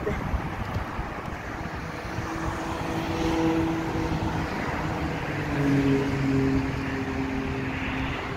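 Street traffic: motor vehicles going by, with an engine hum that comes up about two seconds in and sits lower in pitch in the second half, over a steady rumble of road noise.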